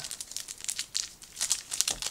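Trading-card pack wrapper crinkling as it is handled, a quick run of small crackles that grows busier in the second half.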